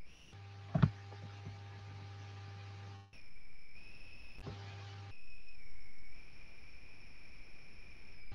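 Steady low electrical hum with a few faint steady tones above it, cutting in and out, and a single short knock about a second in.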